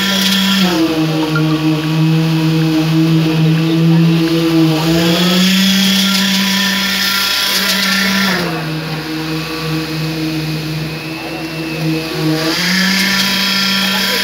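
Concrete-pouring machinery running, a steady motor hum that drops slightly in pitch and rises back again about every four to five seconds.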